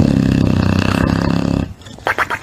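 A sleeping English bulldog snoring once, loud and long. The snore starts suddenly and stops after under two seconds.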